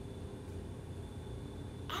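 Quiet room tone: a steady low hum with a faint, thin high tone above it.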